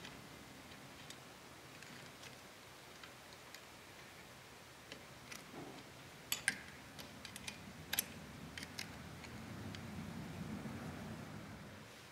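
Faint, scattered metallic clicks and taps of a wrench working the valve-adjuster locknut on a 139QMB scooter engine's rocker arm, locking the adjuster at zero valve lash. A few sharper clicks come in the middle, and a soft rustle of handling follows near the end.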